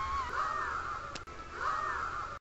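Cartoon characters' voices in two short startled cries, with a click about a second in where the clip is cut.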